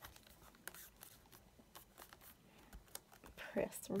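Faint small taps and rustles of fingers pressing down on the clear acrylic door of a stamping platform, pushing a large rubber stamp onto card.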